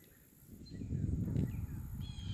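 Outdoor ambience: a low rumble comes up about half a second in and holds, with a faint high bird chirp.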